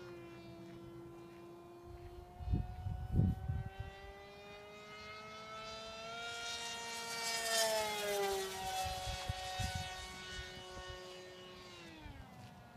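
Electric motor and propeller of a Carbon-Z Scimitar RC flying wing whining in flight: a steady tone that grows louder and rises a little in pitch, then drops in pitch as the plane passes, about eight seconds in. A couple of low rumbles come about two to three seconds in.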